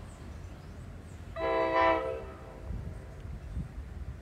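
NJ Transit Multilevel cab car's horn sounding one short, quilled blast of about half a second, swelling in the middle, as a salute. A low rumble lies underneath.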